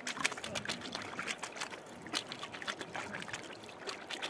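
Water splashing and dripping in quick little strokes as a rubber sluice mat is dipped and swished in a plastic gold pan full of water, rinsing the trapped concentrate out of the mat.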